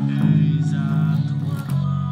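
Electric bass guitar playing sustained low notes along with the recording of the song it covers, the note changing shortly before the end.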